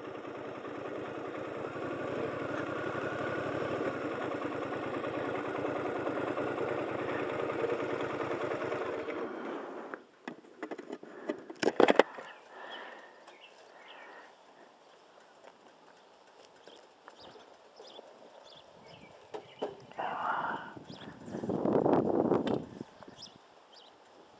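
Motorcycle engine running at low speed while the bike rolls in, then switched off about nine or ten seconds in. A couple of sharp knocks follow about two seconds later, then quieter handling sounds, with a louder rustling near the end.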